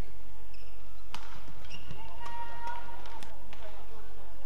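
Badminton rally: a sharp racket hit on the shuttlecock about a second in and lighter hits later, with shoes squeaking on the court floor around two seconds in.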